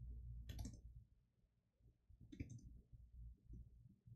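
Computer keyboard keys clicking faintly in short runs of typing, with a pause between them.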